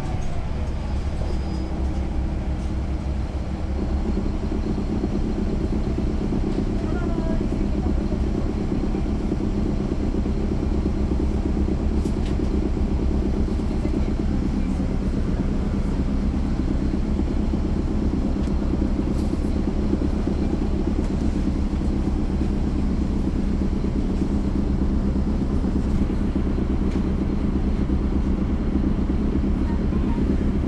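Caterpillar C13 ACERT diesel engine of a 2009 NABI 416.15 (40-SFW) transit bus, heard from the rear seat inside the bus, running with a steady low drone. Its loudness steps up slightly about four seconds in.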